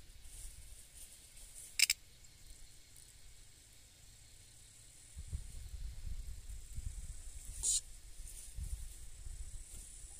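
Outdoor ambience: a faint steady high insect hum, with low wind rumble on the microphone from about halfway through. Two short sharp clicks or chirps, one about two seconds in and a second, weaker one near eight seconds.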